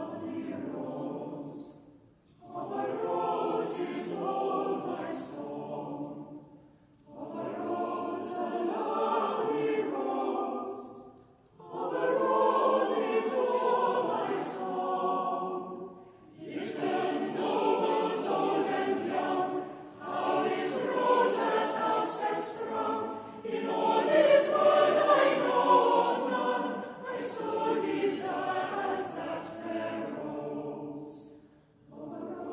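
Mixed choir singing unaccompanied, a carol sung in phrases of a few seconds each with short pauses between them, the singers' 's' consonants standing out crisply.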